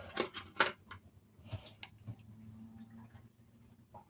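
Light clicks and scrapes of multimeter test leads being handled and a probe being put onto an engine's temperature sender terminal, several sharp clicks in the first second. A faint steady hum runs under the middle of it.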